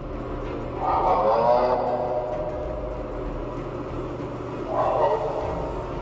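Two long, wavering, scream-like wails, the first about a second in and lasting over a second, the second shorter and near the end, over a low steady hum.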